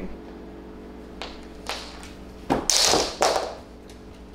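Handling and movement noise as a handheld microphone is snatched away and tossed aside: a few short rustling swishes, the loudest about two and a half to three and a half seconds in, over a steady low hum.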